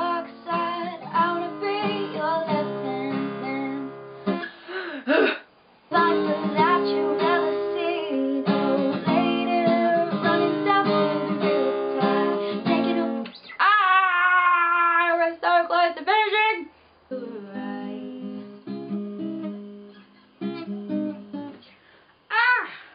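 A woman singing to her own strummed acoustic guitar. There is a brief break about five seconds in, a long sung note with vibrato past the middle, and the playing is quieter for the last few seconds.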